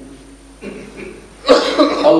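A man coughs once, loudly and suddenly, about a second and a half in, after a quiet lull.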